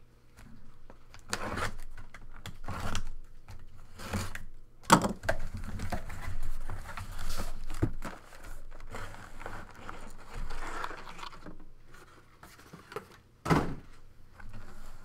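A cardboard shipping case being torn open and boxes of trading cards being pulled out and set down: tearing and crinkling of cardboard with scraping and knocks of boxes, the sharpest knock about five seconds in.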